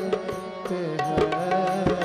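Harmonium and tabla playing devotional aarti music: the harmonium's reeds hold steady chord tones under a melody while the tabla keeps up a run of sharp strokes.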